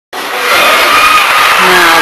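Loud, even crowd murmur in an indoor arena, with a commentator's voice starting near the end.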